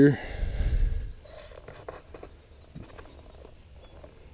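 A low rumble of handling noise on a handheld microphone for about the first second, then faint rustles and a few light clicks as the camera is moved.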